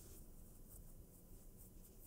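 Near silence: room tone with faint, soft rustles.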